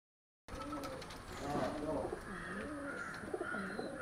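Several caged domestic pigeons cooing, their low rolling coos overlapping one another, starting about half a second in.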